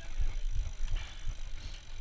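YT Capra mountain bike rolling slowly over pavement, its tyres and drivetrain heard under wind gusting on the microphone, which makes an uneven low rumble.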